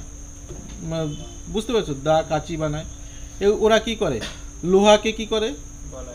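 A man talking in Bengali in short phrases, over a steady high-pitched whine in the background.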